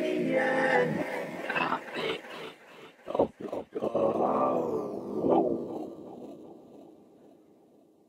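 Vio iPad vocoder synth playing its 'Tasmanian Gothic' preset under finger touches: pitched, voice-like vocoded tones that shift at first, turn choppy with short breaks about three seconds in, then trail off and fade out near the end.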